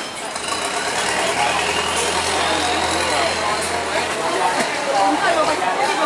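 Voices chattering over a steady engine hum, with a whine that rises in pitch over the first three seconds; the engine fades out about four to five seconds in.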